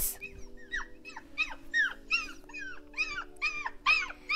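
Puppy whimpering: a quick run of short, high yips that fall in pitch, about four a second, over steady background music.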